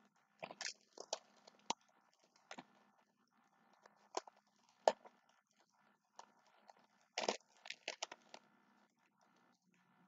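Crunchy food being bitten and chewed, heard as irregular clusters of short crunches with pauses between them. A faint steady hum runs beneath.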